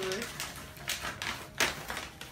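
Wrapping paper being torn and rustled off a present: a run of short, crisp rips, with a louder one near the end.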